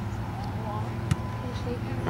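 Open-air ambience at a youth soccer match: a steady low rumble with faint, distant shouts of players, and one sharp knock about a second in.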